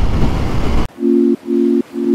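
Wind and road rush on a motorcycle rider's camera microphone, cut off abruptly about a second in by music: held chords repeating about twice a second.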